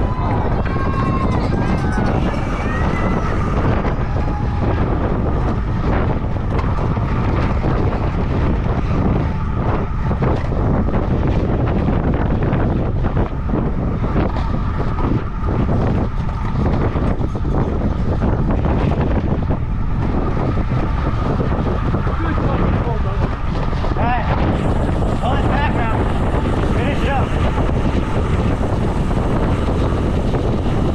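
Wind rushing over the microphone of a handlebar-mounted camera on a road bike moving at about 29 mph: a steady, heavy low rumble that never lets up.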